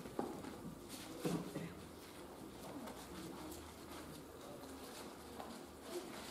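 Pages of Bibles rustling quietly as they are leafed through to find a verse, with a few faint low murmurs in a small room.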